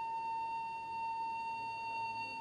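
One steady, unwavering high tone, a single held note with faint overtones above it.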